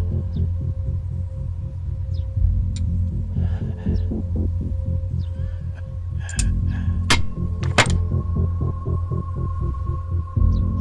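Tense suspense score: a fast, evenly pulsing low drone under a held high tone, with two sharp clicks a little under a second apart about seven seconds in.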